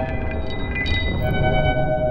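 Electronic ambient drone music made from resonator tones: several steady, horn-like pitches held over a dense low rumble. A few faint ticks sound early on the top, and a new, brighter set of steady tones comes in a little past the middle.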